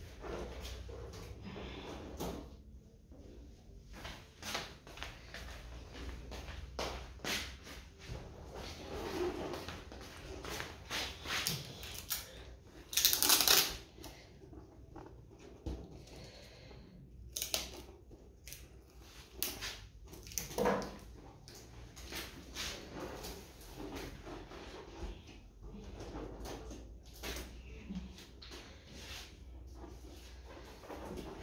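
Rustling, small clicks and rubber squeaks of latex balloons and sticky tape being handled, with one loud rasp lasting about a second, about thirteen seconds in, of tape pulled off the roll.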